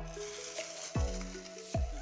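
Hip hop background music: a beat with held synth tones and deep bass notes that glide down in pitch, about a second in and again near the end.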